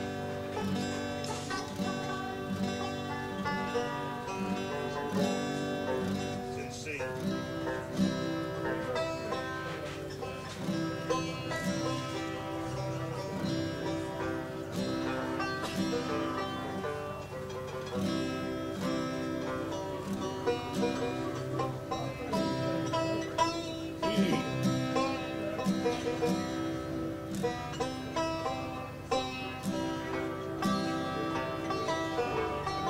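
Five-string banjo played solo: a picked instrumental tune of quick running notes that ring on one another without a break.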